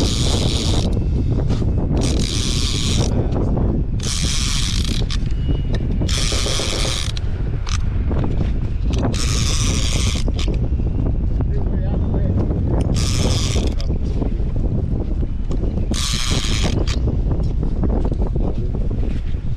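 Conventional fishing reel ratcheting in about seven short spells, each under a second, spaced a few seconds apart, over a steady low wind rumble on the microphone.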